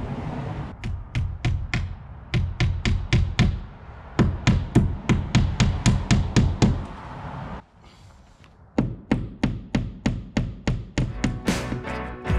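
Background music with a fast, steady percussive beat that drops out briefly past the middle and then comes back.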